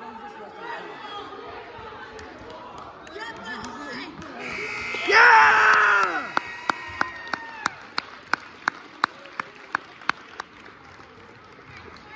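Gym crowd noise, then a scoreboard buzzer sounds for about three seconds at the end of the wrestling bout, with a loud shout over its start. A run of about a dozen evenly spaced hand claps, about three a second, follows.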